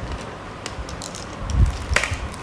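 Plastic molecular-model atom balls being handled, giving scattered light clicks and a plastic bag rustling, with a low thump about one and a half seconds in.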